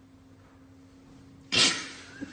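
A sudden sharp vocal burst about one and a half seconds in, dying away within half a second. Before it there is only a faint steady hum.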